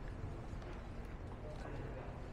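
Steady low room hum with a few faint, scattered clicks and knocks.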